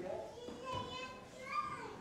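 A young child's high-pitched voice, vocalizing twice, with a higher rising call near the end.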